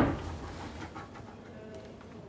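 A single deep boom hit from a trailer's sound design, loud and sudden at the very start, dying away over about half a second into faint low room tone.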